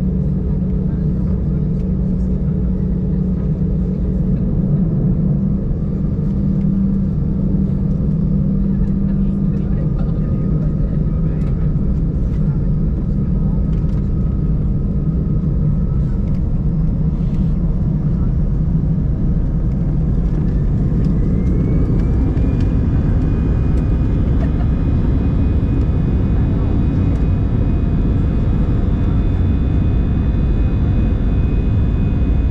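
Inside the cabin of an Airbus A320 taxiing onto the runway: a steady low engine drone with rumble from the wheels. About two-thirds of the way through, a whine rises in pitch and then holds, and the drone grows a little louder as the engines spool up for takeoff.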